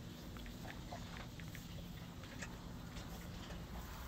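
Quiet background in a pause: a low steady hum with a few faint, scattered ticks.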